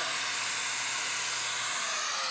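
Hoover Air Lift Lite bagless upright vacuum cleaner running at full suction, a steady hissing rush of air. Near the end a whine begins to fall in pitch.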